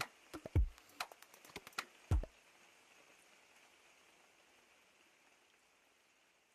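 A few faint, short clicks and two soft thumps in the first two seconds or so, then only a faint hiss that fades away.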